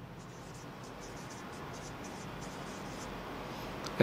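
Marker pen writing on a whiteboard: a faint, irregular run of short scratchy strokes as letters are written.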